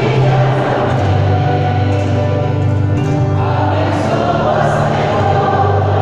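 A church congregation singing a hymn together, with long held notes.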